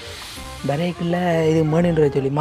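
A voice singing over background music, holding one long note through the second half, after a short hiss at the start.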